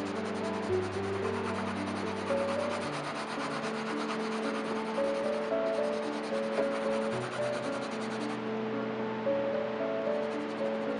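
Graphite pencil scratching on sketchbook paper in quick repeated shading strokes, over soft background music with long held notes.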